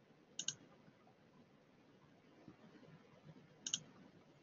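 Two quick double clicks from a computer mouse, one pair about half a second in and another near the end, with near silence between them.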